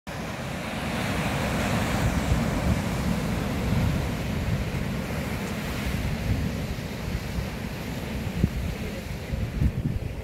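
Sea surf breaking and washing over rocks below a cliff, with strong wind buffeting the microphone in gusts.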